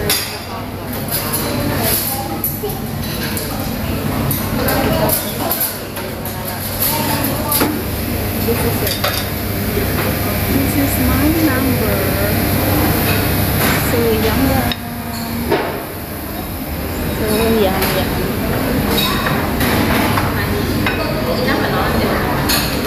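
Busy restaurant din: background chatter with dishes and cutlery clinking over a steady low hum.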